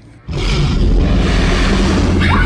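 A sudden, loud, deep rumble cuts in about a third of a second in and holds steady.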